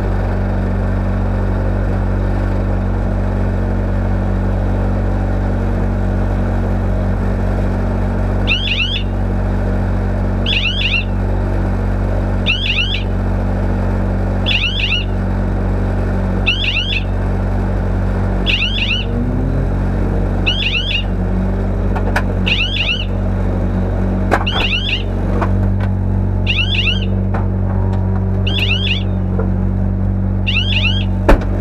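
Rally car engine idling steadily, heard from inside the cabin. From about eight seconds in, a short high chirp repeats every two seconds over it.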